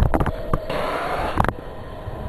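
A few handling clicks, then a short hiss starting a little under a second in and cut off sharply after about a second, from a handheld gas torch held to the gasifier's flare nozzle. Under it runs the steady hum of the gasifier's startup fan.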